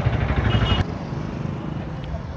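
Street traffic: motorcycle and scooter engines running close by, cut off abruptly just under a second in, leaving a quieter, steady traffic background.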